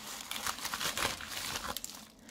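A white plastic mailer bag crinkling and rustling as it is handled and opened by hand, a dense, irregular crackle.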